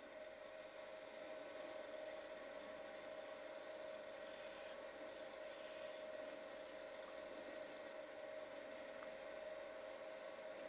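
Wood lathe running steadily at about 2700 rpm, a faint even hum with a steady high whine, while a chisel takes light cuts on a spinning paper pencil body.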